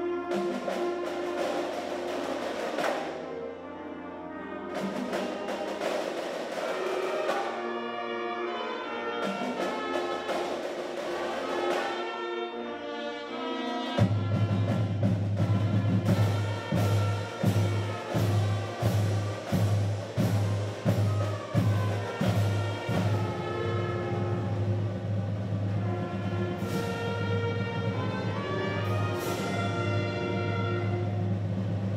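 Recorded orchestral music with brass and timpani. About halfway in a heavy low note comes in, followed by a run of steady drumbeats.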